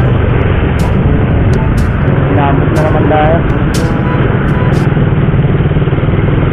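Motorcycle engine running at a steady low note while riding slowly in traffic, heard through rushing wind and road noise on the camera microphone. A few short wavering tones come through near the middle.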